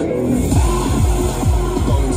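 Electronic dance music mixed live by a DJ on CDJ players and a mixer, with a steady repeating bass beat; the deepest bass comes back in about half a second in.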